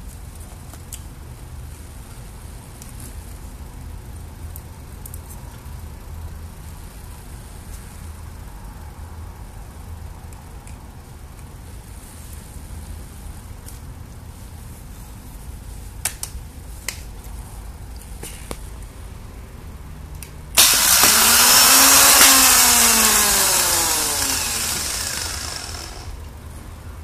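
An automotive starter motor on a bench test, powered from jumper cables, spins up with a sudden loud whine after a few clicks and then winds down, falling in pitch and fading over about five seconds. It runs freely off the car, so the motor itself works.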